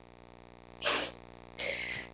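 Two short breathy sounds from a person, the first louder about a second in, the second softer and hissier near the end, over a faint steady hum.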